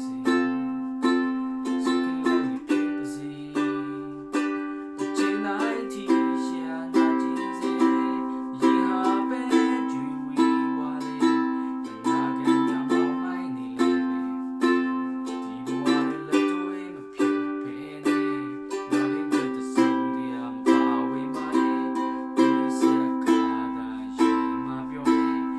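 Ukulele being strummed in a steady rhythm, chord after chord, with the chords changing every few seconds.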